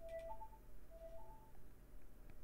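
Google Home speaker playing its broadcast chime, faint: a rising two-note tone, played twice about a second apart, announcing an incoming broadcast.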